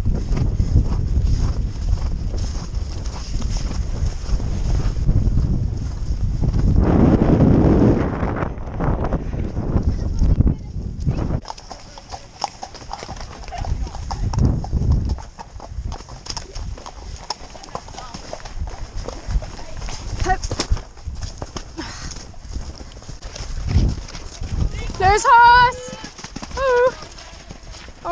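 Hooves of a ridden horse galloping over grass, with a heavy low rumble of movement and wind for about the first eleven seconds. After that the hoofbeats turn quieter and clip-clop on a tarmac lane.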